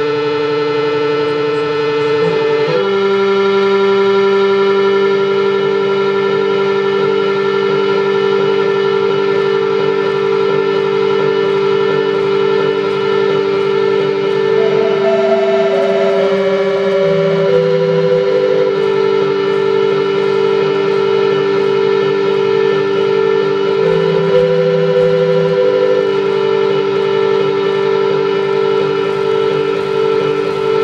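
Electronic drone music: layered, sustained synthesizer tones held steady, the chord shifting about two seconds in. About halfway through a few short higher notes step downward, and another brief note sounds near the end.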